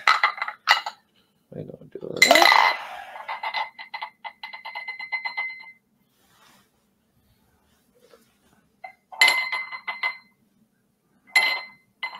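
A small sphere magnet clinking against a glass cup as it is set into the coil, each knock ringing with a glassy tone. A fast run of rattling clicks lasts about two seconds, and a few more ringing clinks come near the end.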